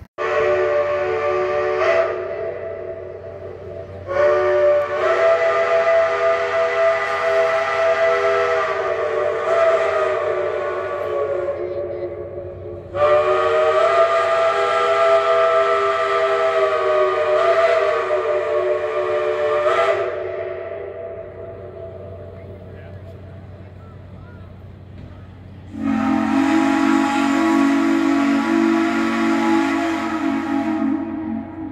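Steam locomotive chime whistles blowing a series of blasts. A short blast comes at the start, then two long ones of about eight and seven seconds each. Near the end a whistle with a different, lower chord sounds.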